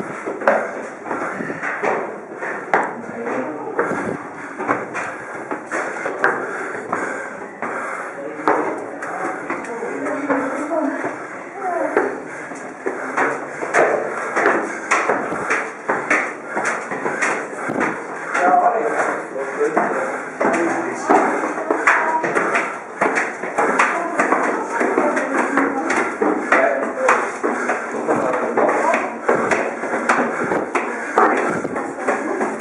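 Footsteps on stone stairs, many short taps in quick succession, under the continuous chatter of several people's voices in a narrow stone stairwell.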